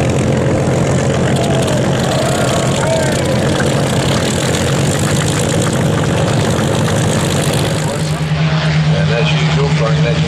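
Vintage fighter piston engines running on the ground, with a Spitfire's V12 engine starting and its propeller coming up to speed in the first few seconds. At about eight seconds the sound changes to a steadier, deeper engine drone.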